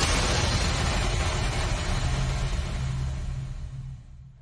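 A loud, steady rushing noise over a low rumble, with no clear pitch or rhythm, that fades away over the last second or so.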